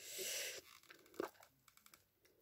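Anthurium root ball being pulled apart by hand: a short crunching, tearing rustle of roots and potting soil in the first half second, then a few faint crackles.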